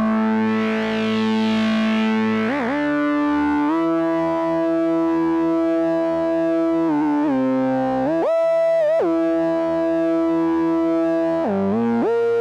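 Korg Monologue monophonic analogue synthesizer playing long held notes, one at a time, that glide smoothly up or down in pitch into each new note. One higher note comes about two-thirds of the way through.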